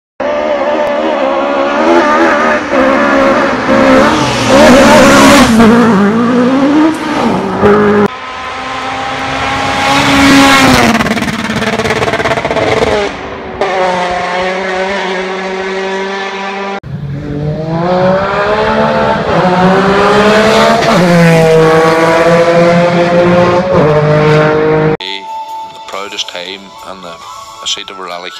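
Rally car engines revving hard, rising and falling in pitch through gear changes, in a string of short clips cut one after another. The engine sound drops away about a second before the end.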